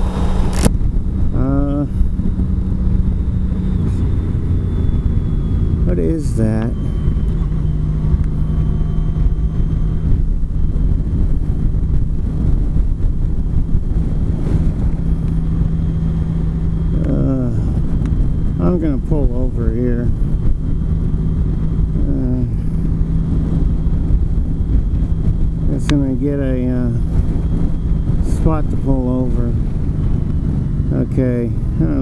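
Honda CTX1300 motorcycle cruising at steady highway speed: an even engine drone under loud wind rush on the microphone.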